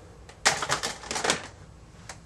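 Rapid clattering clicks from small hard objects being handled, lasting about a second.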